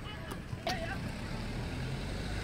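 Touchline ambience at an outdoor youth football match: distant voices of players and spectators over a steady low rumble, with a sharp knock and a brief short call partway through.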